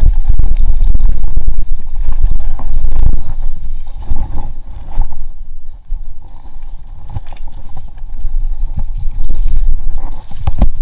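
Wind buffeting the microphone over the rumble and rattle of a GT Zaskar LE aluminium hardtail mountain bike riding fast down a dirt forest trail, with knocks as it goes over bumps. It eases off about a third of the way in as the bike turns onto singletrack, and picks up again near the end.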